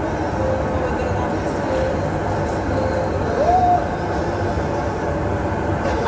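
Hot tub jets running, churning the water into foam: a steady rushing, bubbling noise.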